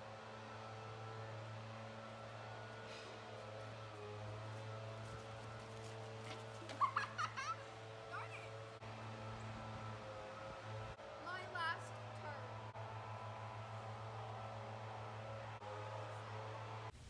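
Faint voices over a low steady hum, with two short bursts of quick high-pitched yelps, one about seven seconds in and one about eleven seconds in.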